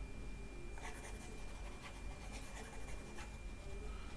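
Faint scratching and tapping of a stylus on a tablet screen, in a few short strokes, over a thin steady high tone.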